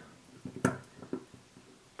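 Small plastic clicks and ticks as a dropper tip is pressed into the neck of a soft plastic e-liquid bottle, with one sharp click about two-thirds of a second in.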